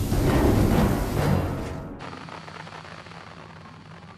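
A cartoon sound effect of an undersea geyser: a loud rumbling rush over dramatic music. It cuts off suddenly about two seconds in, leaving quieter music that fades away.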